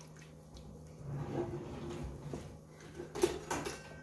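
Wooden spatula stirring a thin flour roux and broth in a stainless steel Instant Pot inner pot: faint scraping and sloshing of liquid, with a few light knocks a little after three seconds in.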